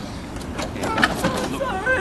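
Low steady rumble of an idling ambulance, with a few light clicks in the first second and voices starting about halfway through.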